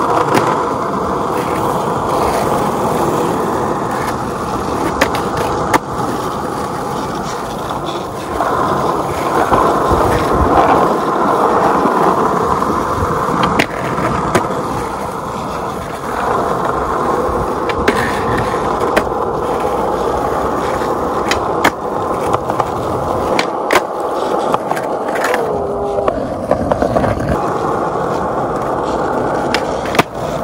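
Skateboard wheels rolling steadily over asphalt, with the board grinding along concrete ledges. Sharp clacks of the board popping and landing come at irregular intervals.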